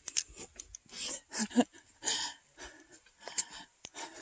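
Footsteps crunching on a gravelly dirt trail at a brisk walk, an irregular run of short scuffs and crunches, with a short laugh about a second and a half in.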